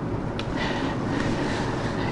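Steady background noise with no speech, and a faint click about half a second in.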